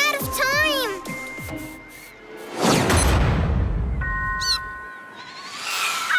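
Animated cartoon soundtrack: music with a wavering, squawk-like vocal sound in the first second. It is followed about two and a half seconds in by a loud rushing swoosh that fades away, then steady held electronic tones.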